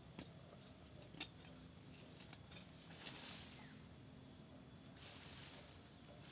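A steady, high-pitched chorus of insects such as crickets in forest undergrowth, with a few short knocks scattered through it, about a second in and again near three seconds.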